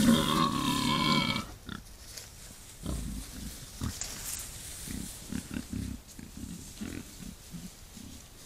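Wild boar calling: a loud, drawn-out pitched grunt-squeal that stops about a second and a half in, followed by a run of quieter, short low grunts.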